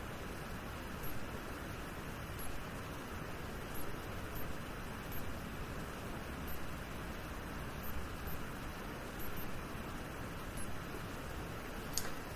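Steady hiss of background room noise, with faint soft bumps about every second and a half.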